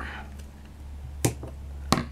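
Large fabric scissors trimming lace: two sharp clicks, a little over half a second apart.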